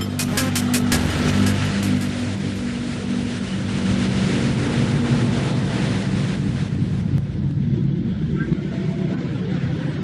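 Loud steady rushing noise over a held low musical drone, thinning slightly toward the end.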